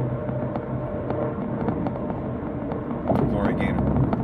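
Steady low hum of road and engine noise inside a moving car's cabin. A man's voice comes in about three seconds in.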